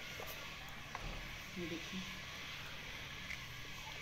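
A wooden spoon stirring vermicelli in steaming hot water in a clay pot, with a couple of faint knocks over a steady hiss.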